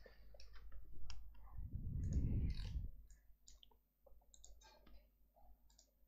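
Faint, scattered clicks from a computer mouse, its wheel and buttons working as an on-screen chart is zoomed out. A low rumble of handling noise comes between about one and a half and three seconds in.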